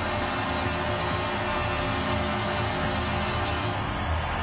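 Arena goal-celebration music playing over a cheering crowd after a home-team goal, steady and loud throughout.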